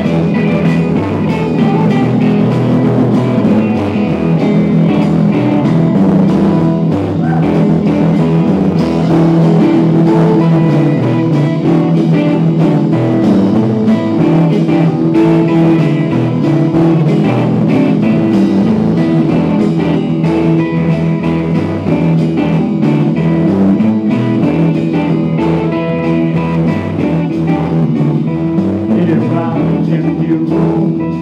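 Live band playing loud and unbroken: two amplified electric guitars over a drum kit.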